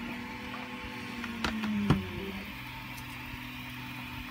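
Light handling knocks of a 3D-printed plastic part being set down on a cutting mat, with two sharp clicks about a second and a half in, over a steady low hum.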